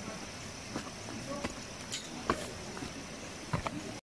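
Footsteps and scattered knocks of sandals on a rocky forest trail, over a steady high insect drone.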